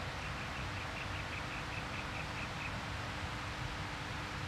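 A bird calling a quick run of about a dozen short, high notes, roughly five a second, which stops well before the end, over a steady outdoor background hiss.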